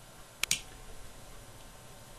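Two sharp clicks in quick succession, about a tenth of a second apart, over faint room noise.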